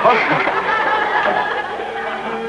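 Audience laughter, with a music bridge coming in under it from about half a second in and running on as the scene changes.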